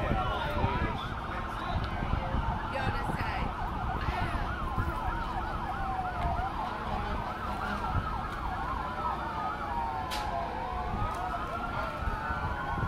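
Emergency vehicle sirens, several sounding at once: slow wails and rapid yelps overlapping, sweeping up and down in pitch without a break.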